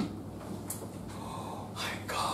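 Low room hum with a short, sharp intake of breath near the end.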